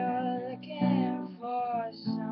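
A woman singing to a strummed acoustic guitar: two long held notes, a new strum landing just before each one, the second about a second in.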